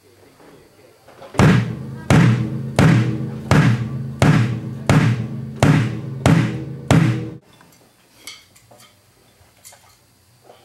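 A drum struck nine times at an even pace, about 0.7 s apart, each hit ringing with a low tone before the next; the sound stops suddenly after the last hit.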